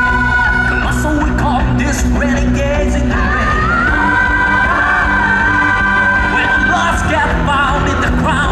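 Live band music with singing: a pop-rock arrangement with drums and bass guitar under a voice that holds long high notes. One note is held near the start, and another runs for about three seconds in the middle.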